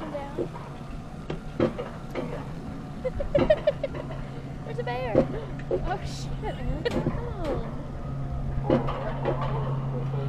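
Mountain coaster cart running on its rail track: a steady low hum that grows louder from about eight seconds in, with scattered clicks, under the riders' laughter and murmured voices.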